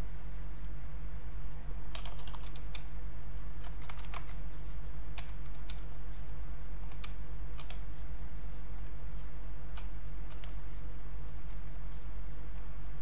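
Irregular clicking of a computer keyboard and mouse, about a dozen separate clicks over a steady low electrical hum.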